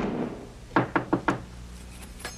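Knocking on a wooden apartment door: a single thump at the very start, then four quick knocks about three-quarters of a second in.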